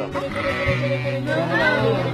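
Sheep bleating, several wavering calls overlapping, over steady background music.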